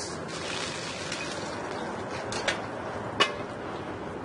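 Steady sizzle of a block of smoked ahi tuna searing in hot olive oil in a sauté pan, with two sharp clicks about two and a half and three seconds in.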